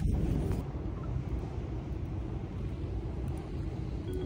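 A steady low rumble of background noise with no voices.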